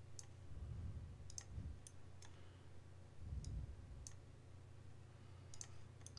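Computer mouse clicking: a handful of light, sharp clicks at irregular intervals over a faint steady low hum.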